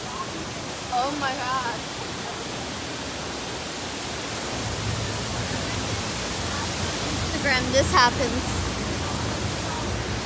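Steady rushing background noise, with a short wavering voice-like sound about a second in and a louder one near eight seconds.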